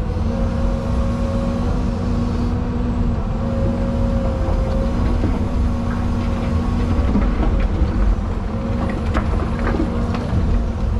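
Excavator's diesel engine and hydraulics running steadily under working load, heard from inside the cab: a low rumble with a steady whine over it and a few faint knocks.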